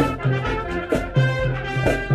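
Marching band playing brass-led music: trumpets and other brass carrying the tune over pulsing low bass notes and drum strikes on a steady beat.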